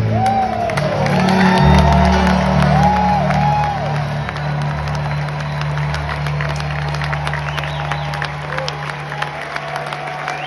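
A live rock band's last chord held and ringing out, a steady low drone that slowly fades, under an audience cheering, whistling and applauding.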